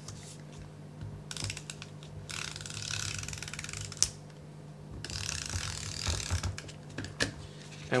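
Handheld adhesive tape runner drawn along the back of a sheet of paper in a few short strokes, its roller clicking rapidly, with a single sharp click about four seconds in.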